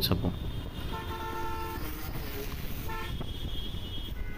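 A vehicle horn honks twice on a busy road: a longer single-pitched honk about a second in and a short one near three seconds. Steady motorcycle road rumble and wind noise run underneath.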